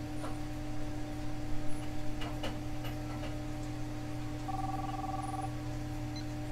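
A telephone ring of about a second near the end, two steady tones together, over a steady electrical hum.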